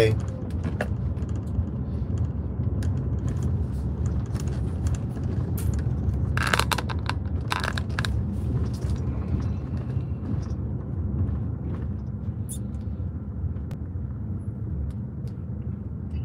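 Steady low rumble of a car's engine and tyres heard from inside the cabin while driving slowly, with a few short sharp noises about six to eight seconds in.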